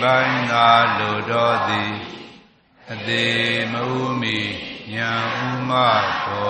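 A Buddhist monk's voice chanting verses in a slow, sustained recitation tone, in two phrases with a short pause about two and a half seconds in.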